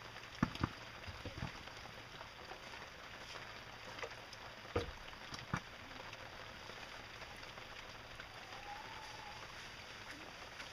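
Styrofoam bits and cement being stirred in a plastic bucket with a hand tool: a steady gritty rustle with scattered sharp knocks of the tool against the bucket, the loudest about half a second in and just before five seconds in.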